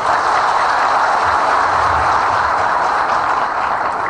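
A large audience applauding: dense, even clapping that stops as the speech resumes.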